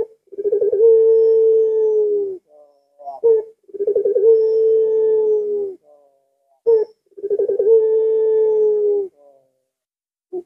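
Puter pelung ringneck dove cooing its typical drawn-out call three times, about three and a half seconds apart. Each call opens with a short sharp note and a stuttering start, then holds one long deep coo that sags a little at the end.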